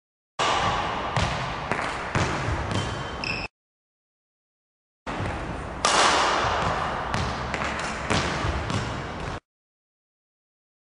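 Badminton footwork on a court: quick footsteps and shoe squeaks on the floor with sharp racket-on-shuttle hits, in two stretches of about three and four seconds that start and stop abruptly.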